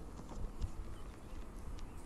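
Faint outdoor ambience: a low steady rumble with a few scattered light clicks.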